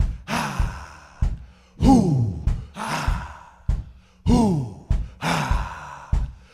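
Live band playing a sparse breakdown: drum hits and cymbal splashes, with a swooping tone that slides down in pitch about every two and a half seconds.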